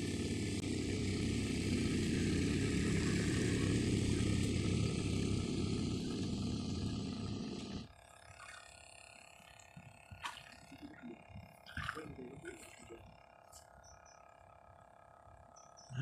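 A small motorboat's engine running loudly and steadily as the boat passes close by. It cuts off abruptly about halfway through, leaving only faint scattered clicks.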